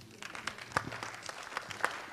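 Light, scattered applause from an audience: a quiet patter of separate hand claps.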